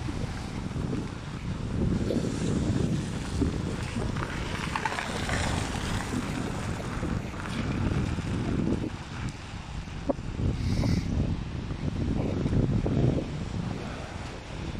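Wind buffeting an outdoor handheld microphone: a low rumble that swells and eases in gusts.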